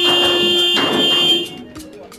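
Background film music with steady held tones that cuts off suddenly about one and a half seconds in, leaving a few faint clicks.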